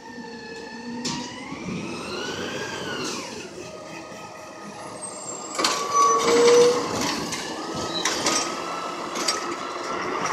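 Curbtender G4 automated side-loader garbage truck pulling up to the curb: its engine and drive whine rise and fall in pitch over the first few seconds, then the air brakes let out a loud hiss as it stops, about six seconds in. A steady hydraulic whine follows as the loading arm starts to work.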